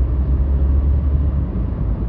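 A steady low rumble with a faint hiss above it, continuous and without breaks.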